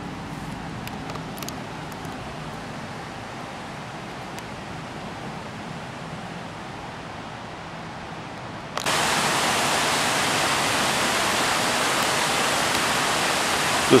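A steady rushing hiss, fairly quiet at first, that jumps suddenly about nine seconds in to a much louder, brighter, even rush that holds steady.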